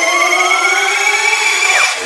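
Siren-like rising synth sweep in a dance remix: a build-up riser, many tones gliding slowly upward together, with a steeper rising whistle over them that bends down and cuts off near the end, just before the next section drops in.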